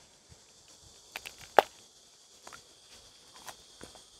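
A few sharp, crisp snaps and crunches of a fresh Kaltan Triple chili pepper being broken open and bitten into, the loudest about one and a half seconds in.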